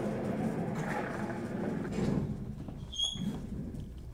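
A person moving about and settling in at a table: rustling and shuffling noise that fades over a few seconds, with a short high squeak about three seconds in.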